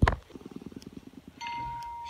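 A sharp click, then a quick rattle of low ticks for about a second, then a steady electronic beep tone that starts about a second and a half in and holds.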